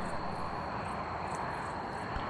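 Crickets chirping steadily at night over a constant hiss.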